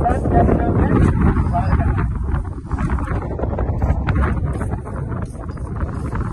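Wind buffeting the microphone in a steady low rumble, with voices in the background.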